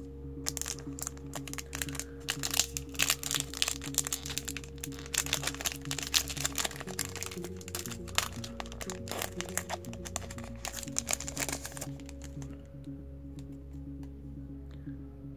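Foil booster-pack wrapper crinkling and crackling as it is handled and torn open, starting about half a second in and stopping a couple of seconds before the end, over steady background music.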